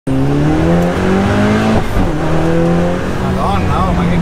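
Dallara Stradale's turbocharged 2.3-litre four-cylinder heard from inside the cabin under hard acceleration: the revs climb, drop at an upshift about two seconds in, then climb again and level off.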